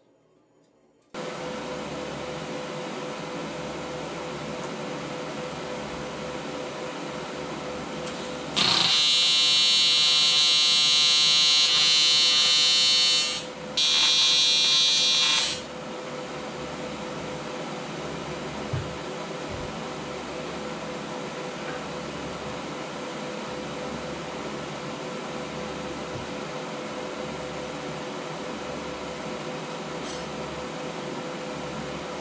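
TIG welder arc on aluminum: a loud, high-pitched electric buzz for about five seconds, a brief break, then about two seconds more. A steady machine hum runs underneath throughout.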